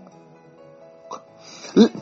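Soft background music, a steady held chord, under a short pause in a man's preaching. His voice comes back near the end.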